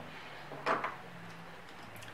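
A brief rustle and clatter of art supplies being handled and picked up, one short scuffing sound about a second in, over a faint steady low hum.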